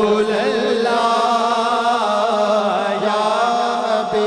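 A man singing a naat unaccompanied into a microphone, drawing out long wavering melismatic notes without words. A steady low drone sounds underneath.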